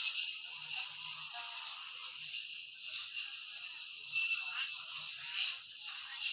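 A tinny jumble of many cartoon soundtracks playing over one another at once, smeared into a continuous haze with no clear tune or voice standing out.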